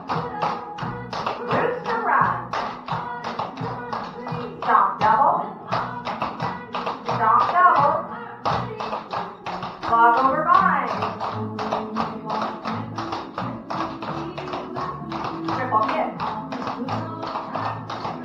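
Clogging shoes' metal taps striking the floor in a quick, even rhythm of steps, over a recorded country song with a woman singing.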